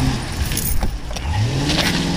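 Police sedan's engine revving as the car accelerates away, its pitch rising about a second and a half in and then holding steady, with a few sharp clicks nearby.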